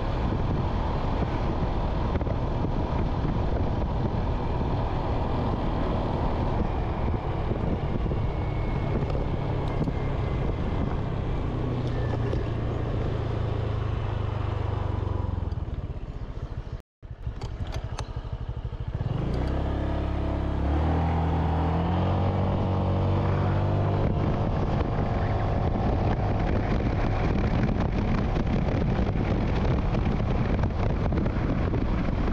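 Motorbike engine running under wind noise on the microphone while riding. About halfway through the engine note falls away as the bike slows, the sound cuts out for a moment, then the engine pulls away again with its pitch rising in steps through the gears.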